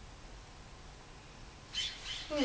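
Faint steady background hiss. Near the end a sudden, louder high-pitched rustling noise starts.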